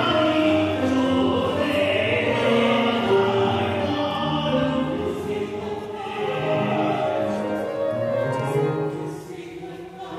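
Classical duet of alto and tenor voices singing with grand piano accompaniment, held sustained notes, dipping quieter just before the end.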